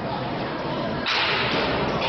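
A baseball bat hitting a pitched ball in a batting cage: one sharp crack about a second in, followed by a brief hiss.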